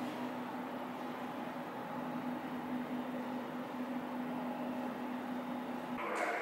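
Steady indoor background noise with a constant low hum; the hum cuts out near the end.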